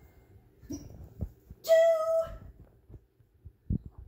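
A woman's wordless, high-pitched vocal exclamation lasting about half a second, near the middle, with soft knocks and shuffling of a body moving on carpet around it.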